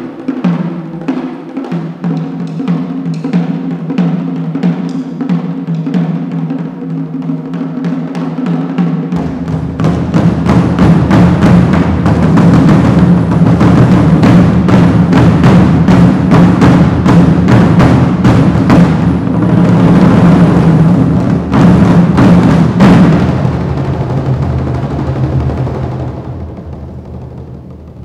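Ensemble of Chinese barrel drums playing: steady strokes about two a second, then from about ten seconds in the drumming turns louder and much denser, a fast roll that holds before easing off near the end.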